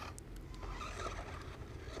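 Faint whirring of a toy remote-control off-road truck's small electric motor and gears as it drives up out of a dirt hollow.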